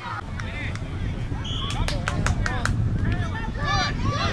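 Faint, distant voices of sideline spectators over a steady low rumble of wind on the microphone. About one and a half seconds in there is a brief high tone, followed by a quick run of five or six sharp claps or clicks.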